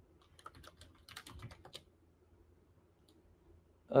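Computer keyboard being typed on: a quick run of key clicks over the first couple of seconds, then a pause.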